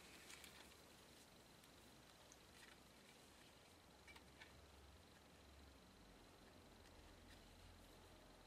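Near silence, with a few faint soft clicks and rustles from a satin ribbon being threaded through a small metal buckle.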